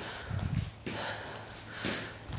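A woman breathing hard through the nose during a fast side-to-side shuffle in a low squat, with a sharp exhale about half a second in and another near the end, along with faint low thumps.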